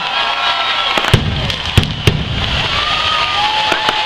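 Stage pyrotechnic fountains (gerbs) spraying sparks with a steady loud hiss, broken by a few sharp cracks between one and two seconds in.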